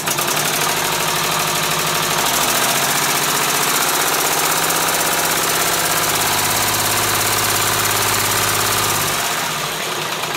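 Homemade three-cylinder eccentric-drive compressed-air motor starting suddenly and running fast, only two of its valves fitted. It gives a loud hiss over a steady mechanical drone. Near the end it drops in level and the individual strokes begin to be heard.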